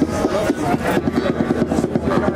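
Live band music without singing: acoustic guitars strummed in a quick, even rhythm with the band behind them.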